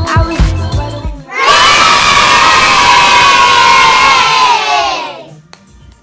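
The end of an upbeat music intro with a beat, then, about a second and a half in, a crowd of children cheering and shouting loudly for about three and a half seconds before it fades out.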